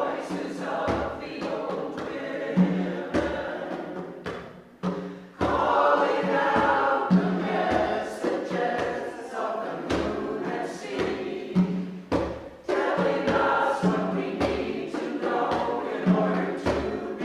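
A mixed choir of men's and women's voices singing together in parts, with repeated low beats under the singing.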